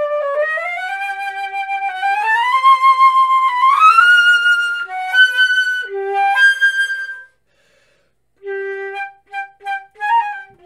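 Solo concert flute playing, with notes that slide upward in pitch over the first few seconds, then separate held notes, a pause of about a second, and short detached notes near the end.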